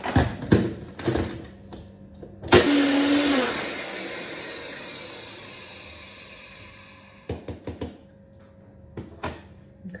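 Personal bullet-style blender blending ice, water and protein powder into a thick shake. It starts suddenly about two and a half seconds in, loudest at first, and grows gradually quieter until it stops about seven seconds in. There are a few knocks and clicks before it starts and after it stops.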